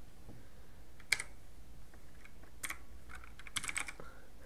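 Typing on a computer keyboard: a few scattered keystrokes, then a quick run of several near the end.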